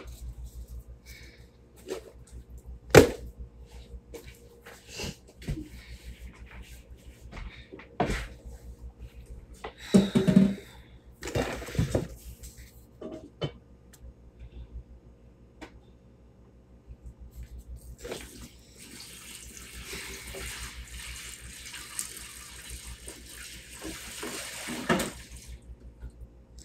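Water running into a sink for about seven seconds in the second half. Before that come scattered knocks and handling clatter; the sharpest knock is about three seconds in.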